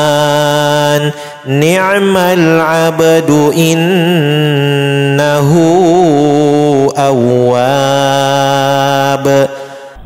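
Melodic Quran recitation in Arabic (tilawah): a single voice chanting long held notes with ornamented pitch turns. It breaks for a breath about a second in and trails off just before the end.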